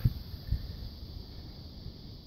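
Wind rumbling on a phone's microphone, with a couple of soft handling knocks near the start and about half a second in.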